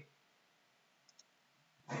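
Two faint, short clicks about a second in over quiet room tone, with speech starting again near the end.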